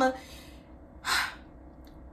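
A woman's short, sharp intake of breath about a second into a pause in her speech, with the last syllable of a sentence trailing off just before it.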